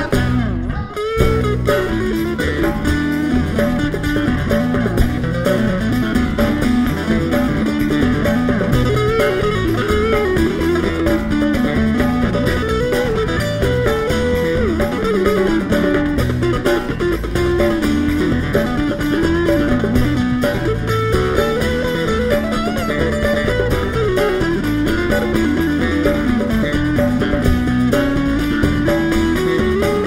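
A live acoustic band plays an instrumental passage: strummed acoustic guitars, electric bass guitar and a hand drum, with a melody line moving up and down over the rhythm. The music drops briefly about a second in, then runs on steadily.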